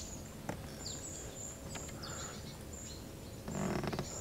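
Faint birdsong among riverside willows: a string of short, high chirps and a few quick falling notes. Near the end there is a brief, louder rustle or handling noise.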